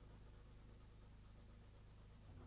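Faint scratching of a wax crayon rubbed back and forth on drawing paper while colouring in an area.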